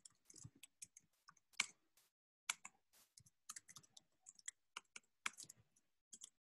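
Faint keystrokes on a computer keyboard: irregular typing, with a short pause about two seconds in.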